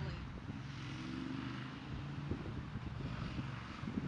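Outdoor background noise: wind on the microphone over a steady low rumble, with a few faint knocks about halfway through.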